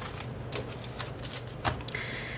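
Rolls of washi tape handled in the hand, knocking lightly against each other and against the hard tabletop: a handful of light, irregular clicks and taps, the loudest a little before the end.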